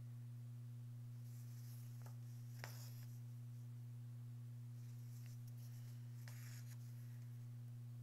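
Embroidery floss being drawn through fabric stretched in a hoop: a few faint swishes of thread, over a steady low hum.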